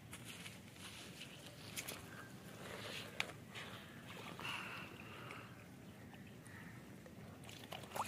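Faint outdoor ambience at a lake edge, with a few scattered sharp clicks, the loudest about three seconds in.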